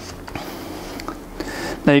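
Screw-on plastic lid of an acrylic French-press tea tumbler being turned down: faint rubbing with a few light clicks.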